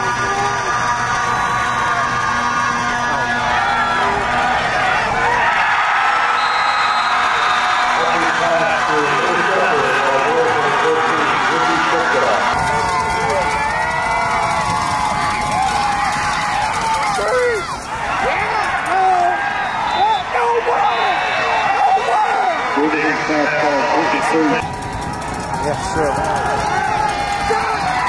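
Football crowd yelling and cheering, many voices overlapping, with held musical notes underneath for the first five seconds or so. The sound changes abruptly twice, about halfway through and near the end.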